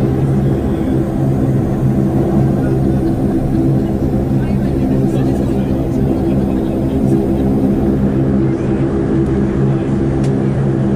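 The Saab 340's General Electric CT7 turboprops running at taxi power, heard from inside the cabin beside the propeller: a steady, even drone with several propeller tones held over a low rumble.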